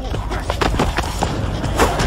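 Fight sound effects: a quick run of punch and body-blow impacts, the loudest near the end, over a background music score.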